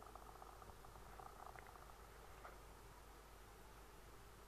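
Near silence: a faint steady hiss with faint, irregular crackling ticks in the first couple of seconds.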